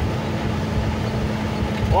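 Heavy truck's diesel engine running under way on a rough dirt road, heard from inside the cab: a steady engine hum over a constant low rumble of road and cab noise.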